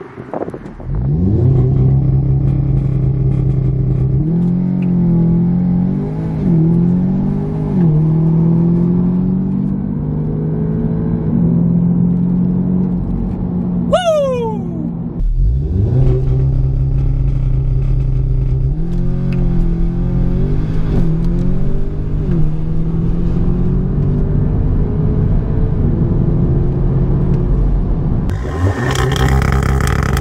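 Audi S3 8V's turbocharged 2.0-litre four-cylinder, with its exhaust resonators deleted, accelerating hard: the engine pitch climbs and drops back at each upshift, several times over. About halfway through there is a brief, steep falling whine.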